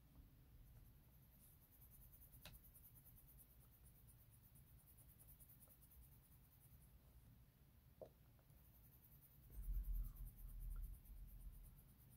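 Faint scratching of a colored pencil shading on paper in quick, repeated strokes. A few low bumps against the desk come about three-quarters of the way through and are the loudest part.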